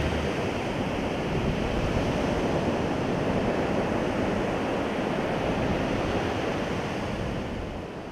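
Sea surf breaking on a sandy beach: a steady rushing wash of waves that eases off near the end.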